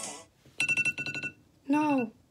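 Music cuts off, then a rapid run of about eight short electronic beeps lasting under a second, followed near the end by one short voiced syllable.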